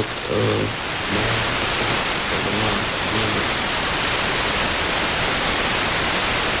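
FM broadcast received over long distance on a software-defined radio: a weak voice is heard under loud, steady receiver hiss for the first three seconds or so, then fades out, leaving only FM noise as the sporadic-E signal drops away.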